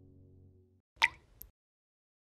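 Soft background music stops, then a water-drop plop sound effect with a quickly falling pitch, followed by a fainter second plop about half a second later.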